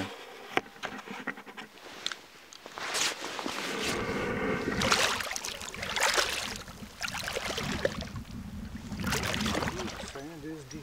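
Water sloshing and splashing around an angler's waders as he wades and reaches into a shallow river, in uneven bouts that grow louder from about three seconds in.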